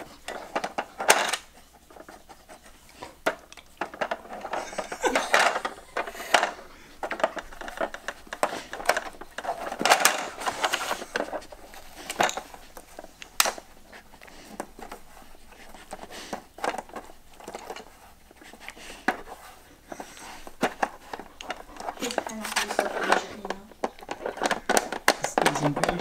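Hard plastic clicks, knocks and rattles from a Trixie Move2Win dog strategy board as a dog pushes its sliders and drawers with nose and paws, coming irregularly throughout.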